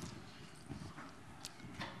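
Quiet room tone with one short, faint click about one and a half seconds in.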